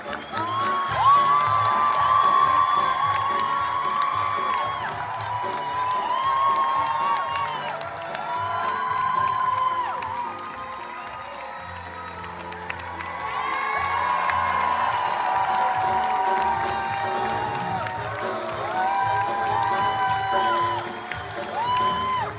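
Theatre audience cheering, screaming and applauding over the orchestra's curtain-call music. Loud, long, high whoops rise and hold for a second or two, over and over.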